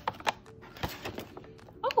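Handling noise: a few scattered clicks and knocks as a plastic bottle of oil and water is lifted out of a cardboard box.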